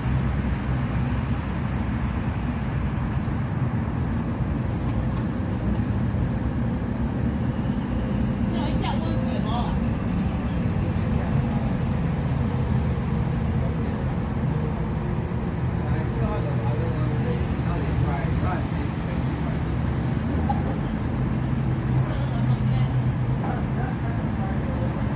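A steady low rumble, with faint voices in the background about nine seconds in and again past the middle.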